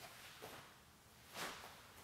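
Faint swishes of a taekwondo uniform and bare feet moving on the floor as a form is performed: a small one about half a second in and a louder, sharper one about a second and a half in, over quiet room tone.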